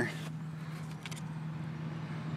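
A steady low hum of a running vehicle engine.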